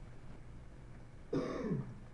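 A person clearing their throat once, a short harsh sound about a second and a half in, over a faint low hum.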